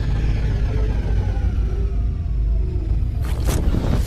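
Film soundtrack sound design: a heavy, continuous low rumble under several tones that glide slowly downward, then two short whooshes near the end.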